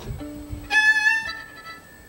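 Fiddle playing a couple of loose bowed notes: a low note held for over a second, joined partway through by a louder, higher note.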